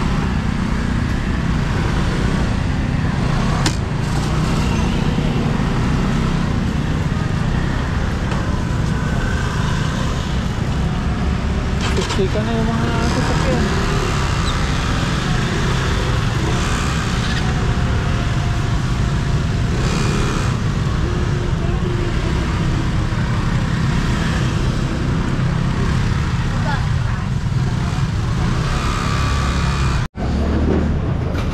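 Motor scooter engines running in slow, crowded street traffic, with a steady low rumble on the microphone and a background of people's voices.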